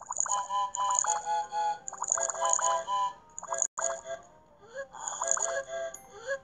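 Bright, quick electronic music from an animated children's story app: rapid runs of short high notes in a few phrases with brief breaks.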